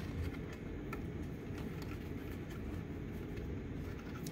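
Quiet handling of a paper cup and yarn as the yarn is threaded behind a cut strip of the cup: faint rustling and a few light ticks over a steady low room hum.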